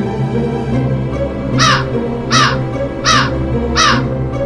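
A crow cawing four times in a steady run, each caw a short, harsh call that falls in pitch, layered over spooky background music.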